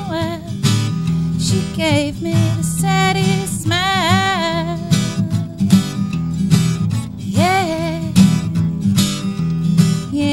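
A woman singing a folk song while strumming an acoustic guitar, her voice holding some notes with vibrato over the steady strumming.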